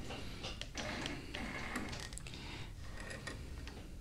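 Faint, irregular clicks and light handling noise from a longarm quilting machine as its head is moved by hand and the thread is set up for a tension test.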